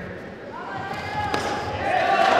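People shouting across the hall, growing louder toward the end, with a single sharp smack of a blow landing about a second and a half in.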